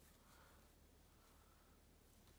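Near silence: room tone, with faint soft rustles of yarn and knitting needles being worked by hand.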